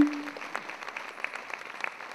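Audience applauding, a steady patter of many handclaps that follows each performer's name.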